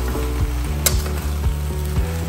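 Cubed aubergine and potato sizzling in oil in a stainless steel pot while being stirred with a metal slotted turner, with a few sharp clinks of the turner against the pot. Background music plays underneath.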